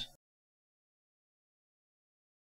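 Silence: the sound track is blank, with only the tail of a spoken word in the first instant.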